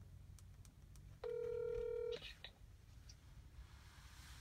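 A phone's ringing tone heard over speakerphone: one steady beep about a second long that cuts off suddenly as the call is answered, followed by a couple of faint clicks.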